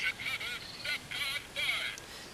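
Birds calling outdoors: a run of short, high-pitched calls, about five in two seconds.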